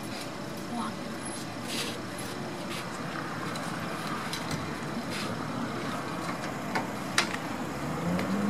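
Steady hum of traffic and vehicles, with a few faint clicks and faint distant voices.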